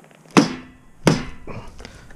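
Two sharp cracks about three-quarters of a second apart, the first the louder, as a Dungeness crab's shell is torn apart by hand. The crab is being 'backed': its top shell pried off from a corner to dispatch and clean it.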